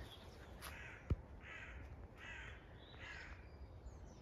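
Distant crows cawing: a run of short, hoarse caws about three-quarters of a second apart. A single sharp low thump comes about a second in.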